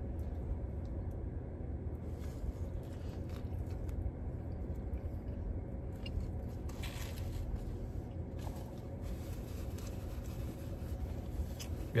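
A man biting into and chewing a burger, faint mouth sounds over a steady low rumble of the car's cabin. A few brief rustles come about halfway through.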